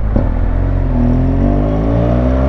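Large adventure motorcycle's engine pulling away, its pitch rising from about a second in as the bike accelerates at low speed.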